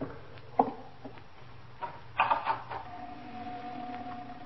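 Radio-drama sound effect of a door being worked: a short click about half a second in, a rattling burst a little after two seconds, then a long, steady drawn-out tone to the end.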